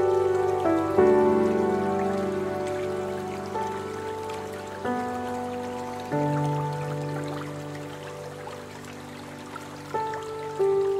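Slow, soft piano music: chords struck a few seconds apart, each ringing out and fading, with the steady splashing of a fountain's water beneath.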